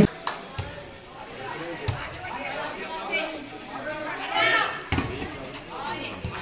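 Voices of volleyball players and onlookers calling out and chattering, with three sharp smacks of the ball being hit, the loudest about five seconds in.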